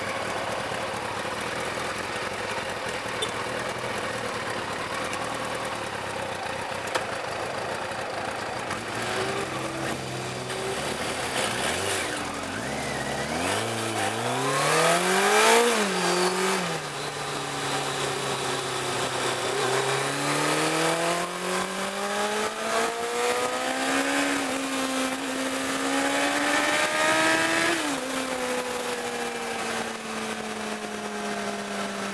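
Car engine heard from inside the cabin, running steadily at first, then accelerating with its pitch rising, dropping sharply at a gear change, then climbing again and dropping at a second shift near the end, over road noise.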